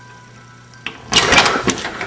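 A metal doorknob turned and a pantry door pulled open: a latch click about a second in, then a loud burst of rattling and clattering.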